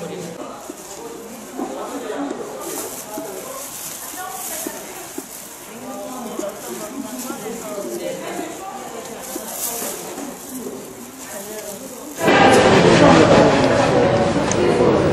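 Indistinct chatter of several people in a room. About 12 seconds in, a much louder, steady rough rubbing noise begins: the round wooden flour sieve being worked back and forth over its wooden stand as rice flour is sifted.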